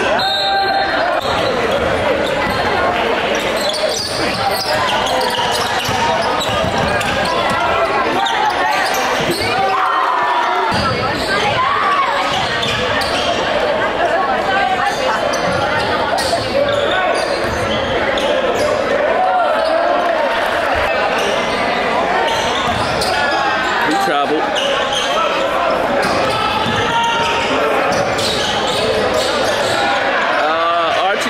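Basketball game in a gymnasium: a basketball bouncing on the hardwood floor amid the continuous indistinct voices and shouts of players and spectators, echoing in the large hall.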